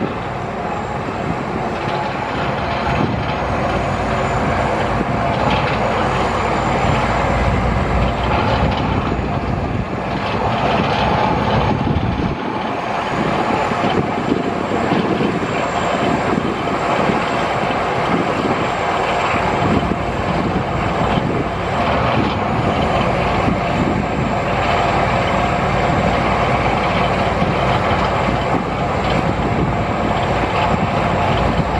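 Volvo motor grader's diesel engine running steadily as the machine moves slowly across snow-covered ground.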